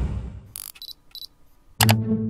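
Low car-cabin rumble fading out, then three short sharp clicks about a second in, and a loud musical hit near the end as background music begins.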